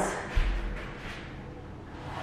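Lime wash brush brushing across a primed wall in strokes, a dry scratchy swishing that fades and swells again near the end, with a low thump about a third of a second in.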